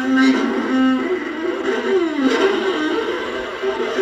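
Solo viola playing single pitched notes in its middle register, with a slide down in pitch and back up about two seconds in.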